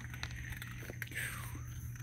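Raccoons eating at close range: faint scattered clicks and crunches of chewing, with a soft rustle about a second in.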